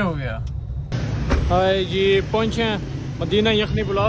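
Street traffic noise, with a man's voice speaking over it; the sound changes abruptly about a second in.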